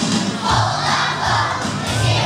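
A large group of young children singing and calling out together over a recorded backing track with a steady beat.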